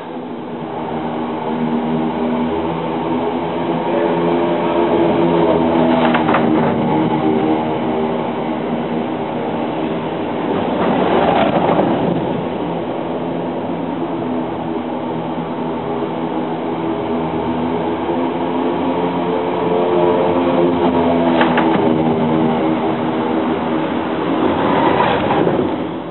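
A derny motorbike and the track riders paced behind it rumbling over the velodrome's wooden boards, heard from underneath the track. A steady droning rumble that swells and fades several times as they pass overhead.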